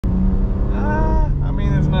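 Cabin sound of a BMW M2 Competition's twin-turbo inline-six cruising at low speed, a steady low engine drone with road noise, and a voice over it.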